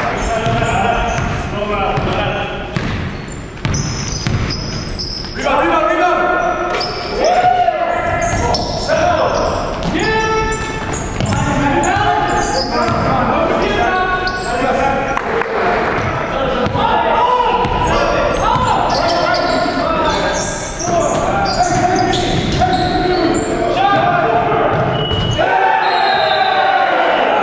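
Live basketball game sound in a large gym: a ball bouncing on the hardwood and players' voices calling out, with the hall's echo.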